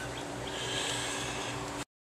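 A steady low mechanical hum with a faint hiss over it, cutting off suddenly near the end.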